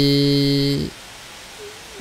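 A man's voice holding one steady, drawn-out hesitation vowel for just under a second. Then it stops, leaving a pause with only faint hiss.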